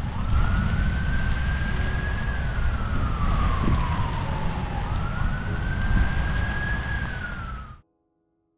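An emergency vehicle's siren wailing: the pitch rises, holds high, sinks slowly through the middle, then climbs and holds high again before starting to drop near the end. Steady outdoor noise runs underneath.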